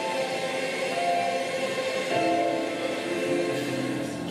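Junior high school mixed choir singing, holding long, steady notes that shift from chord to chord.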